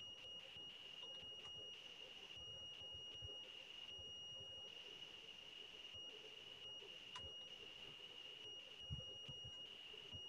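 A faint, steady high-pitched tone held at one pitch over near-silent background hiss, with a soft low thump near the end.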